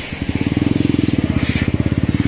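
Motorcycle tricycle's small engine running close by with a rapid, even putter, starting just after the beginning.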